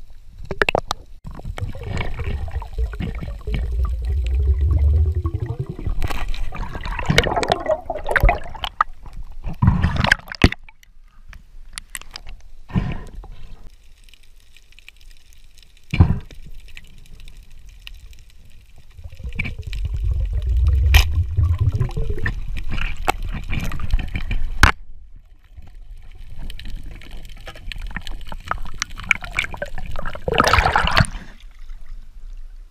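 Water sloshing and bubbling around an underwater camera, in two stretches of low rumbling water movement with a quieter spell between them and a few sharp knocks.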